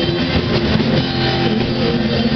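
Live rock band playing loudly and steadily, with guitar and drum kit.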